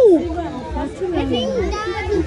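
Children's and adults' voices talking and calling out over one another, with excited children's chatter.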